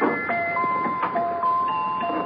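A musical box playing a slow melody of high, ringing single notes, each note held on as the next one sounds.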